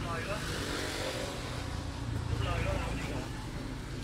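Street traffic noise: a steady rumble of motor vehicles on the road that swells a little about two seconds in, with faint voices in the background.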